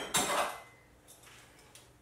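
A glass bottle knocks and clatters briefly against other containers as it is pulled out from under the bar, then only quiet room tone.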